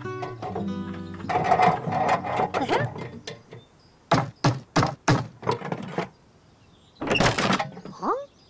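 Cartoon soundtrack music with held notes, followed by a quick run of about six sharp knocks and then a short noisy burst near the end.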